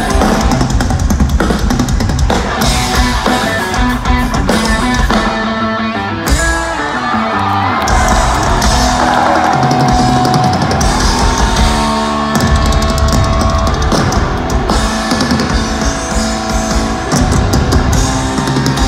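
Live rock drum duel: two drum kits pounding together over electric guitar. The drums thin out for a few seconds in the middle while guitar notes ring, then come back in full.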